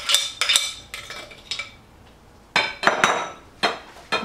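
A metal utensil clinking and scraping against glass mixing bowls while dressing is scraped out and stirred into shredded chicken. Several short ringing clinks come in the first second and a half, then a pause, then a few more about three seconds in.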